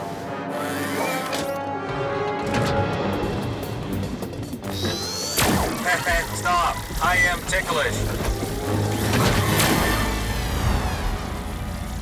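Cartoon soundtrack: music with sound effects. A short rising zap comes near the middle, with crashing hits and brief non-word vocal sounds.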